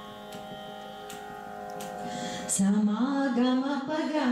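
A steady drone with soft plucks at regular intervals, sustaining the pitch for Carnatic singing. About two and a half seconds in, a singer's voice comes in loudly, gliding between notes as a devotional song begins.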